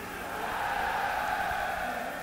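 Indistinct crowd murmur filling a large hall, steady and without clear words, swelling a little after the first half second.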